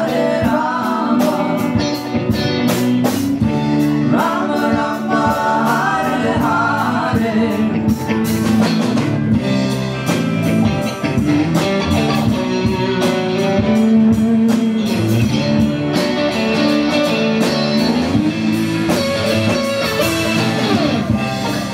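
Live band music: a singer over guitar and drums. The voice comes in for a few seconds in the first half, and regular drum strokes run through.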